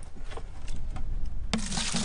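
Faint rubbing and knocking as a plastic bucket is handled and tipped. About one and a half seconds in, water starts pouring loudly from the bucket into another bucket.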